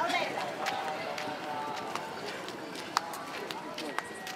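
Faint background voices under a steady outdoor hiss, with scattered sharp clicks and knocks, the sharpest about three seconds in.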